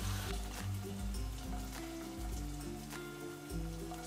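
Background music with steady bass notes, over faint sizzling and crackling of hot oil in a frying pan where chicken skewers have just finished frying.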